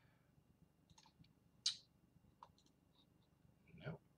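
Near silence with a few faint computer mouse clicks, one sharper and louder than the rest about a second and a half in, as screens are clicked through. A short voice sound comes just before the end.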